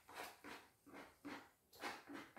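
Near silence broken by about five faint, short rustles and clicks from people eating and handling a cardboard food box.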